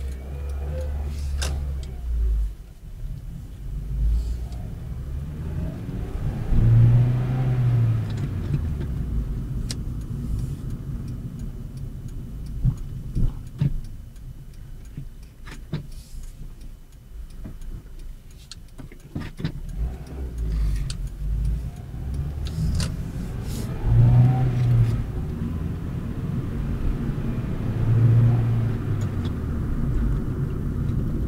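A car being driven, heard from inside the cabin: steady engine and road rumble, with the engine note rising as the car accelerates about three times, and a few sharp clicks and knocks.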